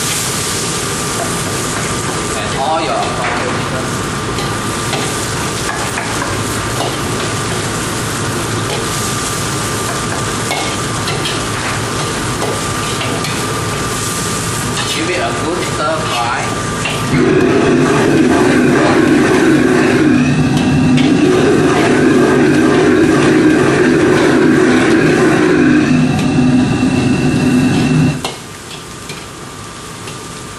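Food sizzling in a wok over a commercial wok burner, with a metal ladle scraping and clanking against the wok as it is stirred. About halfway through, a louder steady hum with several held tones joins in, then cuts off suddenly near the end.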